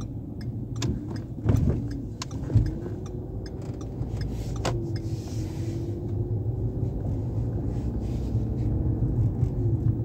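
A car's road and engine rumble heard inside the cabin while driving and turning. An engine note rises and falls a few times, with scattered light clicks and two sharper knocks about one and a half and two and a half seconds in.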